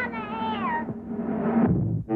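A cat-like wavering wail that slides up and down in pitch and falls away about a second in, over a held low note of background music. A rising rush and a low thud follow near the end.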